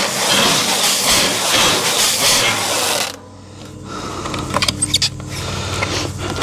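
Stretch-wrap film from a Uline roll pulling off with a loud, harsh noise as a firewood bundle is wrapped in a bundler. The noise is a property of the film, which the speaker puts down to how the plastic is made. It cuts off suddenly about three seconds in and is followed by a few light knocks.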